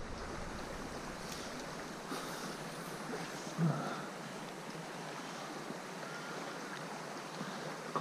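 Shallow stream water flowing steadily over a gravel bed, an even rush of water, with one brief low sound a little before halfway.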